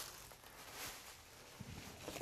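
Faint rustling and light handling noises of plastic bags being pulled from a cardboard box, over a quiet room, with a few small ticks near the end.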